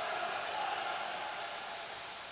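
Steady wash of noise from water polo players splashing as they swim hard through the water in an indoor pool hall.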